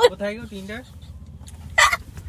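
Laughter: a wavering, pitched laugh through the first second, then a short, loud, breathy burst of laughing just before the end.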